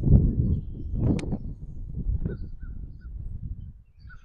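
Wind buffeting the microphone: a low rumble, strongest at the start and easing off toward the end.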